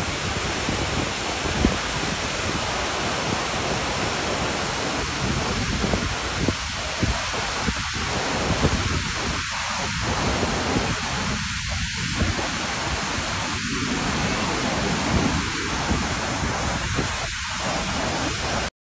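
Steady rushing roar of a large waterfall, a dense, even noise that does not let up.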